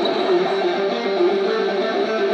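Electric guitar played live through an amplifier, a fast run of notes changing several times a second.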